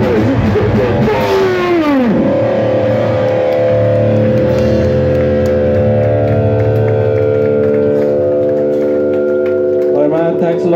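Amplified electric guitars ending a thrash metal song: several notes slide down in pitch over the first two seconds, then a chord is held and rings steadily through the rest.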